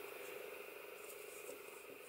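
Near silence: faint room tone with light handling of a crochet hook and yarn while chain stitches are made.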